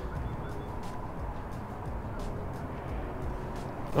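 Outdoor ambience: a steady low rumble of wind on the microphone, with a few faint scattered clicks.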